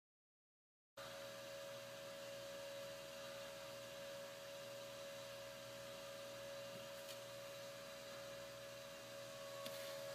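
Faint, steady hum of a small electric fan running, with one steady whine in it, cutting in abruptly about a second in; a faint tick or two.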